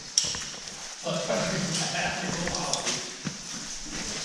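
A man's voice talking faintly in the background, the words unclear, with a couple of light knocks.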